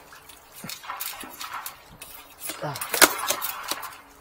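Handling noise from a drain inspection camera's push-rod cable being worked against a snag: scattered clicks, knocks and rubbing, with a sharp click about three seconds in and a short grunt from the man just before it.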